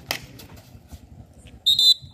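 A referee's whistle gives one short, shrill blast near the end, signalling a point in a kabaddi match. A sharp smack is heard at the start, over a low crowd murmur.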